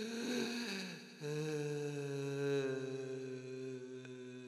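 Low human voices chanting a long, held 'ahm' drone in the manner of a mantra. The sound breaks and wavers in the first second, then settles into one steady note that sinks slightly in pitch.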